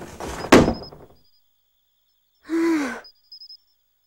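A door being shut, with rustling movement and a single thud about half a second in. A short groaning vocal sound follows around two and a half seconds in.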